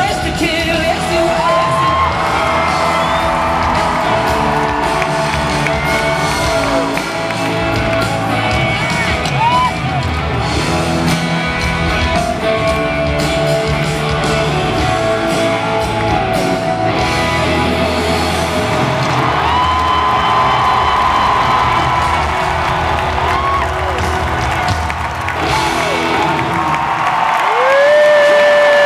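Live rock band heard through a concert PA from the crowd: drum kit and bass under an electric guitar playing gliding, bent notes, with whoops from the audience.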